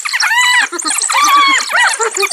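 Spotted hyenas and African wild dogs calling in a squabble over a carcass: a dense chorus of overlapping high calls, each arching up and falling in pitch, several a second, with rapid high chattering above them.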